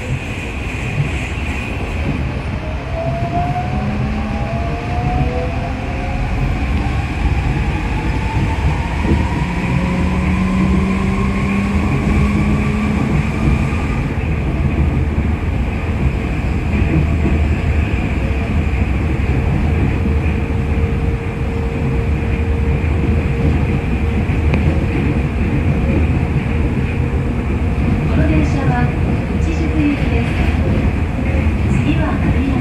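Cabin running noise of a New Shuttle rubber-tyred people-mover car: a steady rumble of tyres on the concrete guideway. Over the first half a whine rises in pitch as the car picks up speed, and a steady tone holds through the second half.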